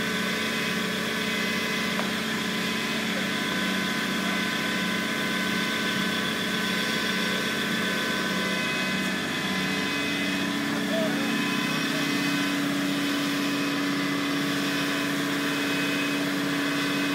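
An engine running steadily at idle, its sound carrying several constant held tones; a deeper steady hum joins about ten seconds in.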